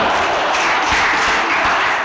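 An audience clapping in a lecture hall: a dense, even patter that fades away at the end.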